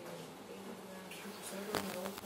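Faint, steady low buzzing hum, with a sharp click near the end.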